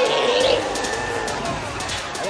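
A creature's wavering, gliding cry over a noisy background.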